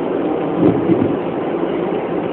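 Steady road and engine noise heard inside a moving car's cabin, swelling briefly about half a second in.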